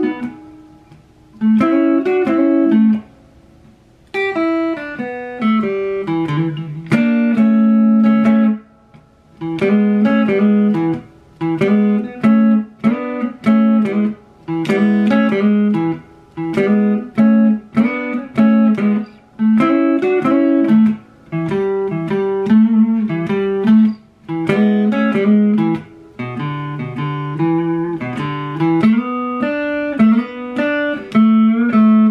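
Electric guitar played slowly and unaccompanied, a Chicago blues shuffle riff of double stops with hammer-ons moving between B9 and E9 shapes. It comes in short phrases with brief pauses between them.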